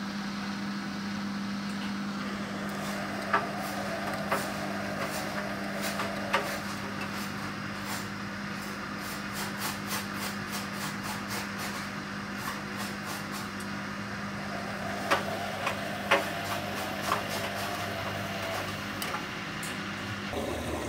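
Hotpoint WF250 front-loading washing machine at the end of its cycle: a steady low hum with a few scattered knocks from the drum and its load, in two clusters, the first about three to six seconds in and the second about fifteen to seventeen seconds in.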